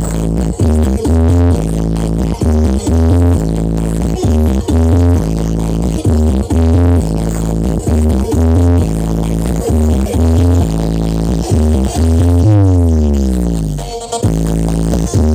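Electronic dance music played at very high volume through a towering stack of sound-system speakers, dominated by a heavy, repeating bass line. Near the end a bass sweep glides steeply down in pitch.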